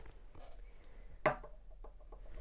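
Faint handling of small objects on a wooden desk, with one short, sharp knock a little over a second in.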